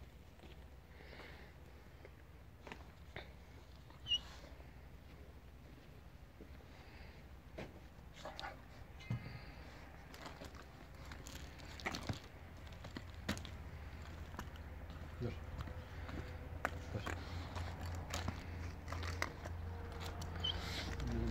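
Faint scattered clicks and scuffs of movement and footsteps on bare dirt, with a low rumble that grows toward the end.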